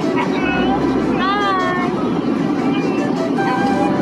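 A young child's wordless high-pitched vocalizing: a few short squeaky sounds, then one longer rising-and-falling whine about a second in, with more short sounds near the end.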